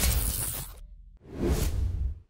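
Two whoosh sound effects over deep bass in a logo-reveal sting: the first fades out within the first second, the second swells up about a second and a half in.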